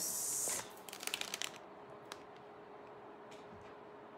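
Handling noise as beaded jewelry is picked at by hand: a brief rustle, then a quick run of small clicks about a second in. A faint steady hum follows.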